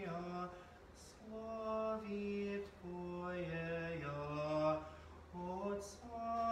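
Unaccompanied Orthodox liturgical chant: singing a slow melody in long held notes that step between a few pitches, in short phrases with brief pauses between them.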